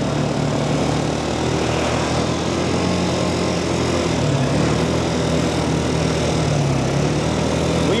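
Quad bike (ATV) engine running steadily on the move, its pitch drifting slightly up and down, over a constant rush of wind and road noise.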